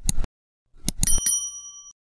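Sound effects of an animated subscribe button: a quick pair of clicks, another pair of clicks about a second in, then a bright bell ding that rings for most of a second.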